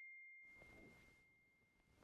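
The ringing tail of a single high-pitched chime, fading away over about a second and a half, then near silence with faint room noise.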